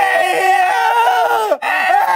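Two men yelling at the top of their voices, long drawn-out wails that overlap one another, with a brief break about one and a half seconds in.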